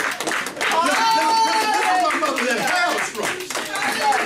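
Congregation clapping, with a voice calling out over it in long, high, drawn-out cries.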